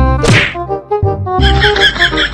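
An edited-in comic sound effect: a sudden whack with a quick falling swoosh, then background music with short piano-like notes.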